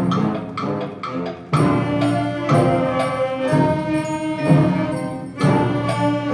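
Middle school concert band of flutes, clarinets, saxophones, brass and percussion playing a programmatic piece depicting a chaotic sleigh ride. A softer moment in the first second and a half gives way to a sudden loud full-band entrance, with another swell near the end.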